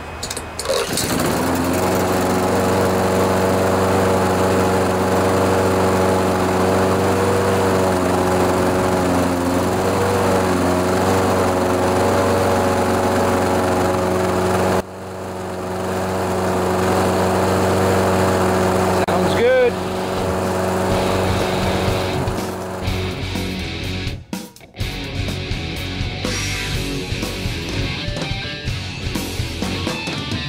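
Honda GCV160 single-cylinder engine on a John Deere 14PZ push mower, pull-started and catching almost at once, then running at a steady governed speed. Rock music with electric guitar takes over for the last several seconds.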